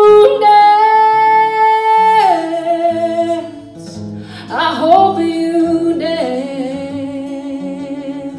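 A woman singing two long held notes, each ending with a drop in pitch, over a strummed archtop guitar.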